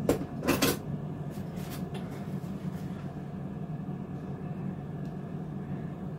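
Steady low hum of a running kitchen appliance, with two sharp clicks in the first second and a few faint ticks after.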